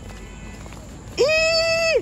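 A woman calling out one long, high, held note for under a second, starting about a second in, after a stretch of faint background hiss.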